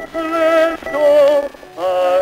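A baritone singing with orchestral accompaniment on an acoustically recorded Victor 78 rpm disc. The sound is thin with almost no bass, and the sung phrases carry a wide vibrato, broken by short pauses about a second in and again near the end.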